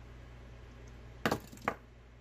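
Low steady hum, then a little over a second in two sharp clacks about half a second apart, the first louder: hand tools being handled on a workbench as pliers are exchanged for a marker.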